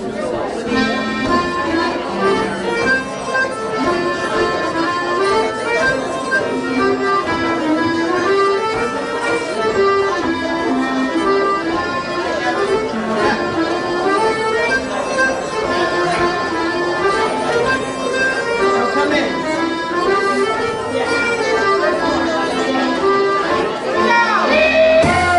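Two piano accordions and a nyckelharpa, a Swedish keyed fiddle, playing a Swedish polska with a drum kit, the tune starting about a second in and running steadily on.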